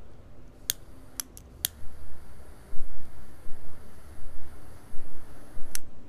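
Butane torch lighter clicked several times before it catches, then its jet flame runs with an uneven rushing for about four seconds while lighting a cigar, ending with a click as it shuts off.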